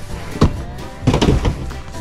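Boxed toys and a board-game box knocking against each other and the cardboard carton as they are lifted out and shuffled, with two sharp knocks about half a second and a second in. Background music plays underneath.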